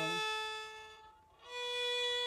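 Violin bowed, playing two single long notes: open A string, fading away just after a second in, then a slightly higher B stopped with the first finger on the A string, held to the end.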